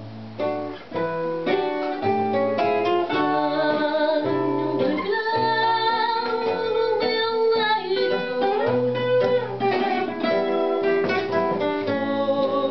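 Fado: a Portuguese guitar and a classical guitar (viola) playing plucked accompaniment, joined about five seconds in by a woman's voice singing long, held, ornamented phrases.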